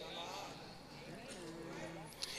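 A lull of faint, indistinct voices in a large hall, with a faint held low tone in the second half.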